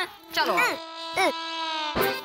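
A high voice making two short gliding cries, then one long drawn-out vocal note that sags slightly in pitch.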